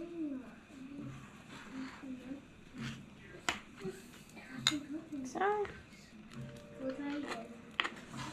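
A kitchen knife slicing hot dogs lengthwise on a cutting board, with a few sharp clicks as the blade meets the board about three to five seconds in. Faint voices run in the background.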